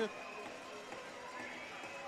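Faint, steady ice-arena ambience: crowd noise in the rink with no distinct events.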